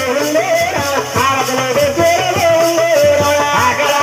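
Amplified folk singing over a steady percussion beat, with a rattling shaker-like sound on the beat.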